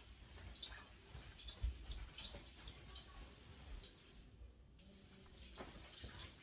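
Faint swishes and rustles of a Chinese broadsword and its cloth tassel spun in figure-eights, recurring about once every 0.8 seconds, with a soft thump nearly two seconds in.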